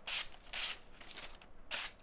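Hollow-ground S90V sheepsfoot blade of a QSP Penguin pocket knife slicing through paper in three short strokes: two about half a second apart at the start, and a third near the end.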